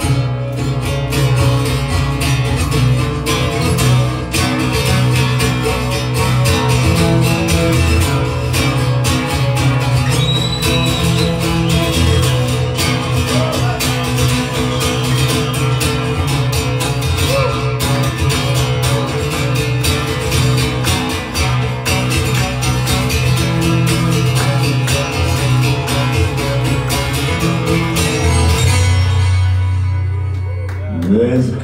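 Solo acoustic guitar played live through the PA in a steady, busy instrumental passage of picked and strummed chords. Near the end the playing thins out, leaving a low note ringing on.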